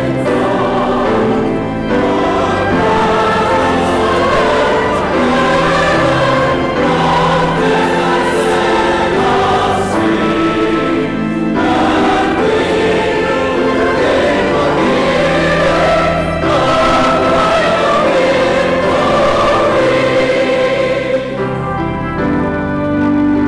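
Choir singing sacred music, loud and steady throughout, with a brief dip near the end.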